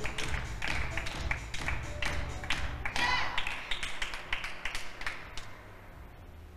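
A small group clapping after a scored point: many quick, separate hand claps that thin out and stop about five and a half seconds in.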